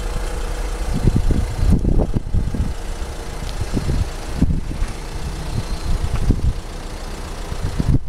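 Wind buffeting a handheld camera's microphone in irregular low gusts, over a faint steady hum.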